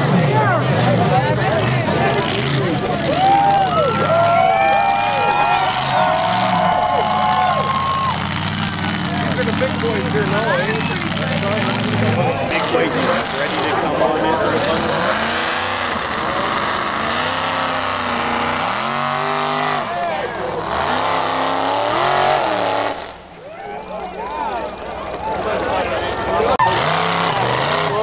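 Mud-bog truck engines revving hard, the pitch swinging up and down again and again, with spectators talking over it. Late on the sound dips away briefly, then picks up again.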